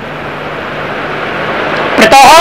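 Steady background hiss with a faint low hum.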